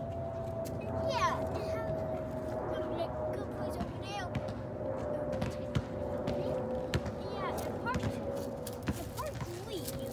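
Outdoor background of a steady hum whose pitch slowly sinks, with quick falling chirps now and then, likely birds, and scattered light taps and scuffs.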